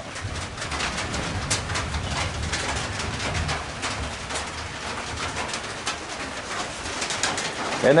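Low, repeated cooing of pigeons, with scattered light ticks and taps.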